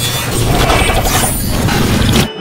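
Loud crackling static noise with a steady low hum underneath.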